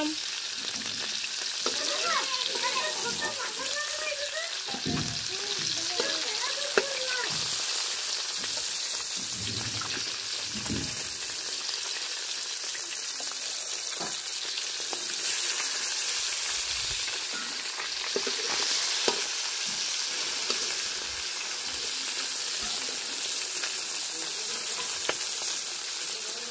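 Pieces of tilapia sizzling steadily as they fry in hot oil in a wok, with a few light taps of the turning tool against the pan.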